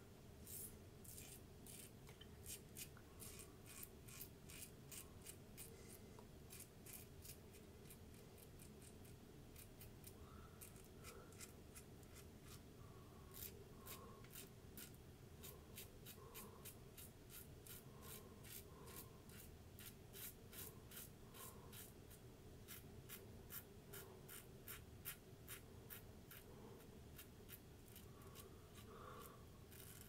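Safety razor blade cutting stubble through shaving lather: quiet, crackly scraping strokes in quick runs, one short stroke after another.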